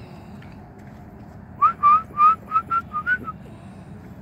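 A person whistling a quick run of about seven short, slightly rising notes, about four a second, calling a dog.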